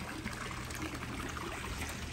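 Two otter-shaped pool spitters sending streams of water onto the pool surface, a steady splashing and trickling, with a steady low hum underneath.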